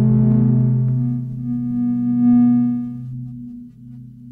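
Ciat Lonbarde Sidrax and Cocoquantus sounding sustained electronic drone tones: a steady low note under higher notes that swell and fade as fingers rest on the touch plates. The sound dims after about three seconds.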